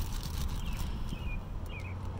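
A small bird chirping a few short notes, about one every half second, over a low steady rumble. Faint crinkling of a clear plastic parts bag being handled near the start.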